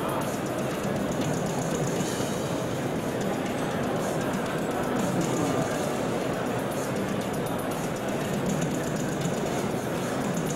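Steady rumbling vehicle noise with music mixed in, unbroken across the shots of military trucks driving off-road.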